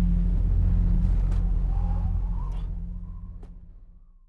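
A deep, steady low rumble that fades out over the last couple of seconds, with a few faint high ticks.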